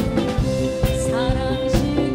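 Trot song performed live: a woman singing over a band with a steady drum beat.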